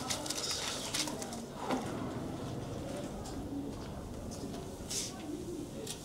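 Pigeons cooing faintly in short, low phrases, with scattered light clicks and knocks.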